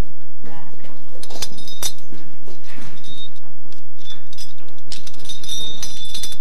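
Metal climbing hardware clinking and jingling as it knocks together, in sharp ringing clinks from about a second in and a denser cluster near the end, over a steady low hum.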